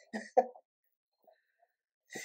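Two short, quick vocal sounds from a person over a video call, a brief throat-clearing or laugh-like noise rather than words, in the first half-second.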